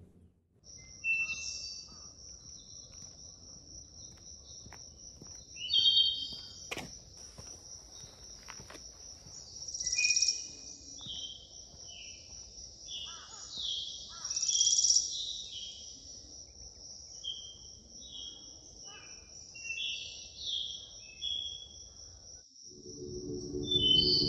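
Woodland ambience: a steady high-pitched insect drone, with songbirds chirping and calling over it, the loudest calls about six, ten and fifteen seconds in.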